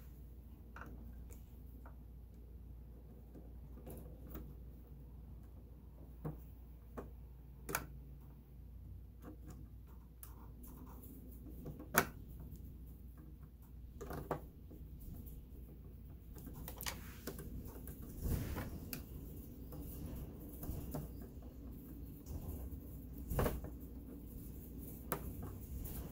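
Scattered small clicks and taps of a screwdriver and a screw being handled and driven into the casing of a sewing machine, with faint handling rustle in between. The sharpest click comes about twelve seconds in.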